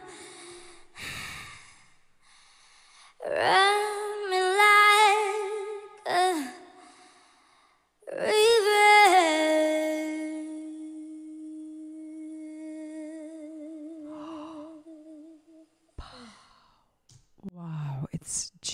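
A woman's solo singing voice with no backing: a few short sung phrases, then a long closing note held for several seconds with a slow, wavering vibrato that fades away. Faint breaths follow near the end.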